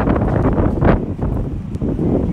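Wind buffeting the handheld camera's microphone as a heavy, uneven rumble, with city street traffic underneath.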